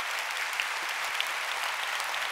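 A large audience applauding, a steady dense patter of many hands clapping.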